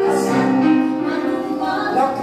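Voices singing a theatrical song over musical accompaniment, holding long notes and moving between them.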